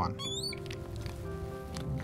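Marker squeaking on a glass lightboard: a few short rising squeaks near the start. Soft background music with steady held notes runs underneath.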